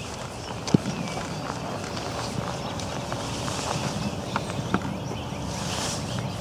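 Outdoor wind noise rumbling on the microphone, with one sharp tap a little under a second in and a few fainter clicks later.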